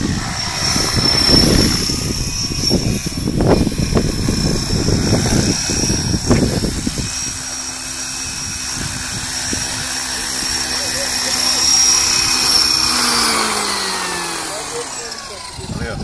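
Radio-controlled model helicopter: a steady high whine from its motor and rotors over low gusty noise while it flies. After it sets down about halfway through, a steady hum of the still-spinning rotor remains, falling in pitch over the last few seconds as the rotor spins down.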